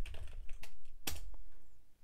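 Typing on a computer keyboard: a few separate key clicks, the loudest about a second in, as a short command is keyed into a terminal.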